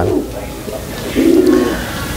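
Domestic pigeon cooing: one short, low coo a little over a second in.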